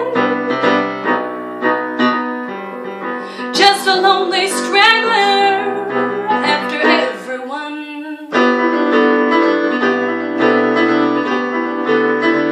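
A woman singing a slow song to her own keyboard piano accompaniment. The voice stops about two-thirds of the way through, and the piano carries on alone with steady chords.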